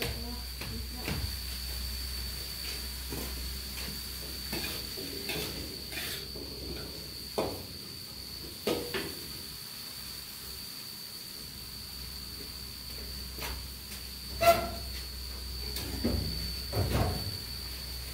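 Scattered knocks and clatters of cookware and utensils around a wok on a gas stove. The loudest is one sharp clank a little past two-thirds of the way through, with a few more knocks near the end.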